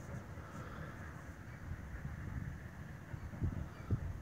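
Faint outdoor background: a low, even rumble with no engine running, and two soft bumps near the end.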